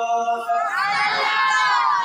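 A held sung note ends about half a second in. It is followed by a loud, drawn-out, high-pitched vocal cry that rises and then falls in pitch for about a second and a half.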